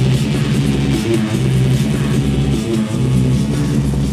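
Loud techno from a DJ set playing over a club sound system, with a repeating bass line.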